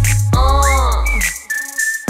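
K-pop dance track playing: a deep bass note under a falling pitched line, then a whistle that slides up and holds one high note through the second half.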